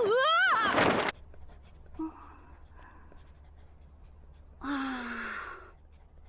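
An anime voice actor's loud, wavering cry in the first second, its pitch rising and then falling, followed by a quiet stretch and a short falling sigh-like vocal about five seconds in.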